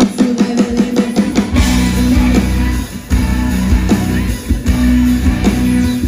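Live pop-rock band playing an instrumental passage with guitar and drum kit. Short repeated hits open the passage, and the full band comes in about a second and a half in.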